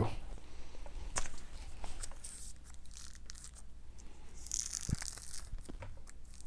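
Packaging on a book being picked at and torn open by hand: scattered light clicks and handling noise, with a short tearing hiss about four and a half seconds in.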